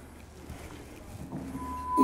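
Quiet room tone with faint movement sounds. In the last half second a short, steady high tone sounds as a video reel starts playing over the room's speakers.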